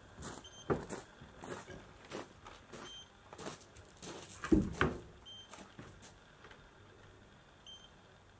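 A small electronic device gives a short high beep about every two and a half seconds, four times. Under it are irregular knocks and scuffing footsteps, the loudest a thump about halfway through.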